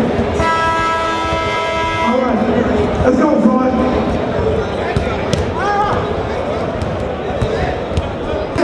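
Busy gymnasium crowd noise with voices, and basketballs bouncing on the hardwood court during warm-up. A steady held tone with many overtones sounds for about two seconds near the start.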